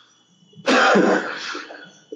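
A man coughs and clears his throat: one sudden harsh burst about two thirds of a second in, fading over the next second.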